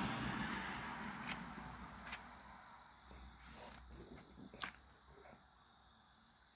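Faint handling noise: a few light clicks and scrapes from a cardboard sparkler box being turned in the hand, the loudest near the end, over a low background noise that fades away in the first few seconds.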